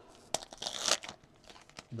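Foil wrapper of a Topps Chrome Sapphire Edition card pack crinkling as it is torn open: a sharp snap, then a short crinkling rustle about half a second in, followed by a few faint rustles.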